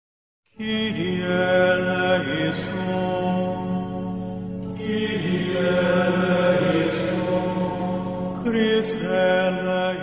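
Choral chant as opening music: voices sing long sustained phrases over a held low note, starting about half a second in.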